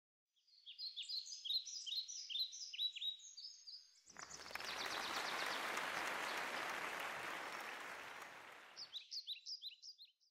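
Birds chirping in quick repeated high calls, cut off about four seconds in by a sudden, steady rushing noise that fades over about five seconds, after which the chirping returns briefly.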